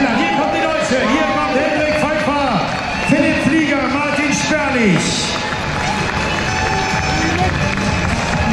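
Amplified voice over a public-address system echoing across the square, mixed with music and crowd noise.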